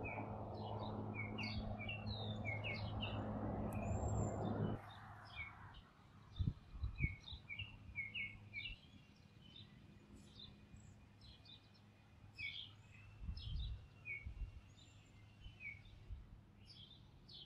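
Small birds calling in short, high chirps, over and over. For the first five seconds a steady low hum and rush sits under them, then stops abruptly. A few low thumps follow shortly after.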